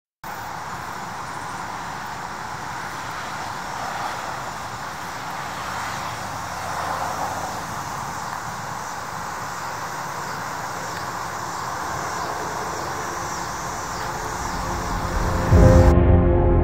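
Steady road traffic noise, a continuous hum of passing cars with slight swells. Near the end, music comes in with a loud low note.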